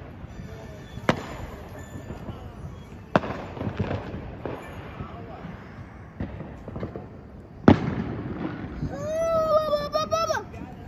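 Fireworks going off: three sharp bangs, about a second in, about three seconds in, and the loudest near eight seconds, each with a short echo after it.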